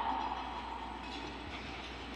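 Hall room tone in a pause in a speech: a steady, low background hum and hiss, with the echo of the last spoken word dying away at the start.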